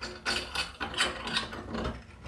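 Ratcheting hand screwdriver clicking in uneven strokes as the screws holding a grab rail's mounting flange to the wall are undone.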